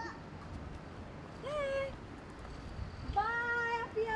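Two high, drawn-out wordless calls from a voice: a short one that rises and levels about one and a half seconds in, then a longer, steady held call near the end. A low, even street hum runs beneath them.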